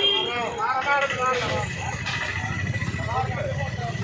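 Several men's voices talking and calling out at once over the low rumble of a bus engine passing close by, the rumble growing heavier in the second half.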